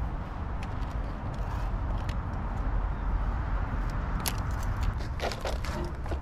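Steady low outdoor rumble with scattered light clicks and crackles, which grow more frequent near the end.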